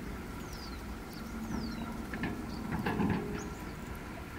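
A low steady rumble with faint, thin calls of small birds over it: two high whistles falling in pitch in the first half, and a few short chirps later.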